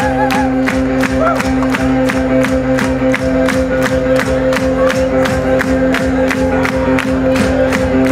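Live synth-pop band playing a song's instrumental intro before the vocals come in: sustained synth chords and bass over a steady drum beat, with crowd noise from the audience.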